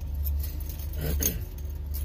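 A man clears his throat, over the steady low hum of a semi truck's idling diesel engine heard inside the cab.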